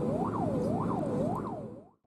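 Police car siren wailing in rapid rise-and-fall sweeps, about two a second, heard from inside the pursuing patrol car over steady engine and road noise. It fades and cuts off near the end.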